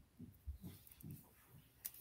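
Near silence, with faint low pulses about twice a second and a couple of faint ticks.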